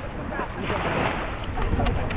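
Wind rumbling on the microphone over small lake waves lapping at the shore.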